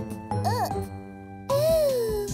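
Gentle cartoon background music with tinkling, chime-like notes, and a small childlike character voice making a few short rising-and-falling vocal sounds, the loudest near the end.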